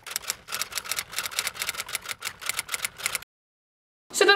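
Typewriter keystroke sound effect: a rapid, even run of key clacks, about ten a second, that cuts off suddenly a little over three seconds in, leaving dead silence.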